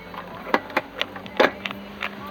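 A handful of sharp clicks and knocks, about five in under two seconds, as the car's interior trim and the camera are handled inside the cabin, over a faint steady low hum.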